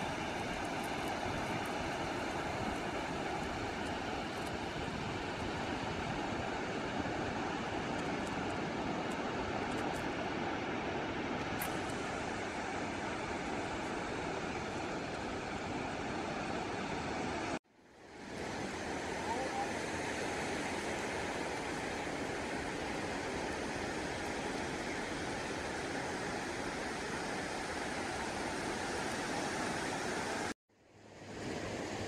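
Steady noise of sea surf breaking on a beach, dropping out abruptly for a moment about 17 seconds in.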